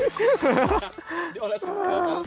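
A man's voice making wordless exclamations.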